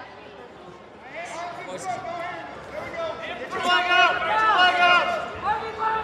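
Voices shouting and calling out at some distance across a gymnasium, with crowd chatter under them.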